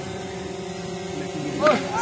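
Steady low electrical-sounding hum over the faint murmur of a crowd of spectators, with a short raised voice near the end.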